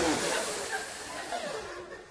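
A man hissing into a microphone, mimicking gas rushing through a valve as something is inflated. The hiss starts sharply and trails off over about two seconds.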